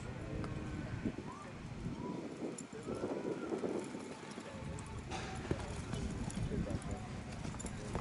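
A cutting horse's hooves thudding and scuffing in soft arena sand as it makes quick stops and turns to hold a cow, with people talking in the background.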